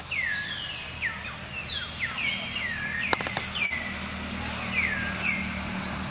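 A bird calling over and over with high, clear whistles that each slide down in pitch, coming about every half second to a second. There are a few sharp clicks about halfway through.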